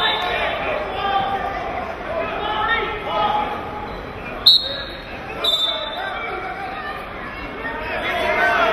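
Crowd and coaches' voices in a large gymnasium hall. About four and a half seconds in comes a short, sharp, loud blast, and a second shorter one follows about a second later: the referee's whistle restarting the wrestling from the referee's position.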